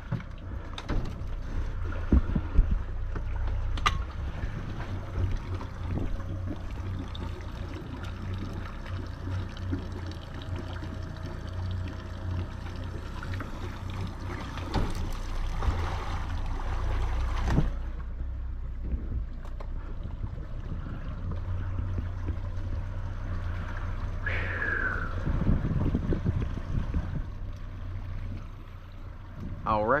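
Boat motor running at idle with a steady low rumble as the boat moves slowly away from the dock, with a couple of sharp knocks about two to four seconds in.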